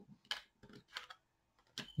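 Tarot cards handled on a tabletop: about four faint, short taps and slides of hand and card against the cards and table.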